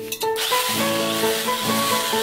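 Hand file scraping the steel tongues of a gas-cylinder tongue drum (glucophone) to tune them: a steady, even hiss-like scraping that starts about half a second in, under background music.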